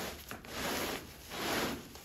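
Meat being cut with a blade: two long strokes, one about half a second in and one near the end.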